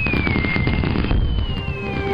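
Strings of firecrackers going off together in a dense, continuous crackle, with fireworks shooting up and two whistles falling in pitch. Music plays underneath.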